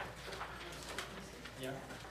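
Faint, indistinct voices murmuring in a room, with a sharp click at the start and light knocks and movement noise.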